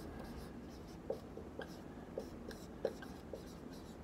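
Dry-erase marker writing on a whiteboard: a string of faint, short squeaks and scrapes, one for each stroke of the letters.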